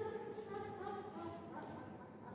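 Slow hymn singing: voices hold long, steady notes that grow quieter toward the end.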